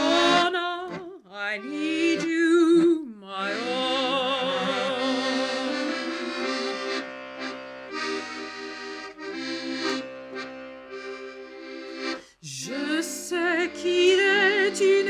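Hohner Verdi III piano accordion playing a song accompaniment, with a woman's voice singing over it with vibrato. There is a short break in the sound about twelve seconds in.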